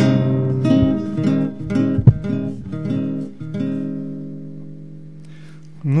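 Acoustic guitar finger-picked in a short closing passage of notes and chords, ending in a last chord that rings out and fades about four seconds in. The player says it sounds "like firewood" (dull and wooden) and puts this down to his own poor tuning of the instrument.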